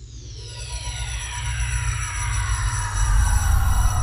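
Electronic intro music of a TV news programme: several synthesized tones sweep steadily downward in pitch over a pulsing low bass. It starts suddenly and grows louder.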